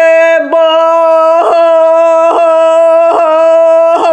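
A woman singing a Sakha toyuk, holding one long, steady note with brief catches in the voice about once a second: the throat ornaments typical of toyuk singing.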